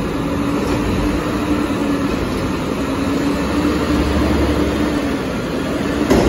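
Heil Half/Pack Freedom front-loader garbage truck lifting a recycling container up over its cab: the engine and hydraulics running under load as a steady rumble with a held whining tone, the low rumble swelling about four seconds in.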